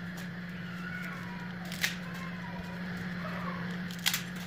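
Water at a rolling boil in an aluminium pot on a gas burner, bubbling as broken spaghetti is dropped in, over a steady low hum. A few sharp clicks sound, the loudest a little before halfway.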